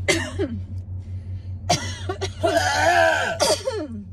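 A woman coughing into her fist: short coughs at the start and again near the middle, then a drawn-out high-pitched vocal sound about a second long. A steady low hum runs underneath.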